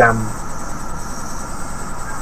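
Steady hum with a faint high whine from hobby servo motors powered and driven by a 16-channel PWM servo controller board.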